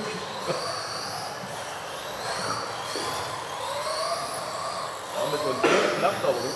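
High-pitched whine of electric RC cars racing on an indoor carpet track, the pitch gliding up and down as they accelerate and brake. A louder burst comes near the end.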